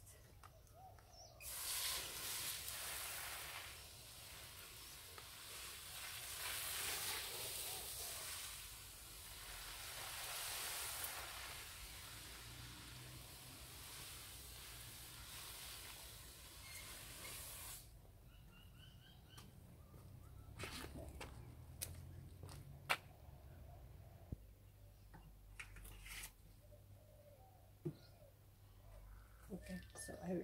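Garden hose spray nozzle hissing as water sprays over garden plants, swelling and easing in strength, then cutting off sharply about eighteen seconds in. A few scattered faint clicks and taps follow.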